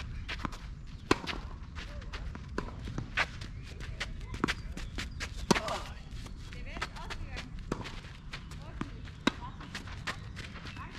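Tennis rally on a clay court: sharp pops of rackets striking the ball, one every couple of seconds, the loudest about halfway through, with smaller knocks of bounces and footsteps on the clay in between.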